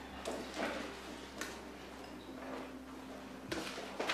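A few faint, scattered taps and clicks over a steady low hum.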